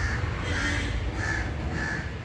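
A bird calling over and over, about four short calls in two seconds.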